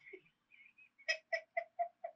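A woman's short laugh, five quick bursts about four a second starting about a second in, heard faintly through a phone on speaker.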